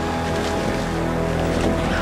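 Background music of low, held notes that shift slowly, with no speech.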